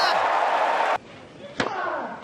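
Tennis crowd cheering and applauding, cut off abruptly about a second in. Near the end a tennis ball is struck once by a racket, with a sharp crack.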